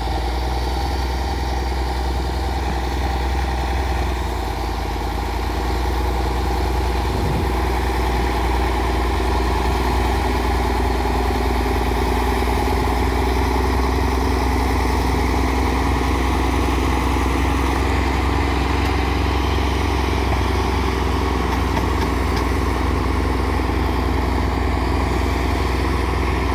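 Diesel engines of several Case four-wheel-drive tractors running under load as they haul a large fishing boat across beach sand, a steady engine sound that grows a little louder about six seconds in and then holds.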